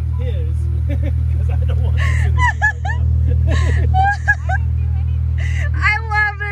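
Jeep Wrangler engine idling with a steady low rumble, under people talking.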